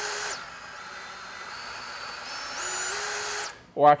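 DeWalt DCS377 Atomic 20V brushless compact band saw running free on its variable speed trigger. The motor whine drops back to a slow speed just after the start and holds there, then climbs in steps to full speed between two and three seconds in. It cuts off shortly before the end.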